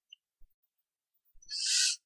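Near silence, then near the end a short breathy hiss: the narrator drawing breath just before he speaks.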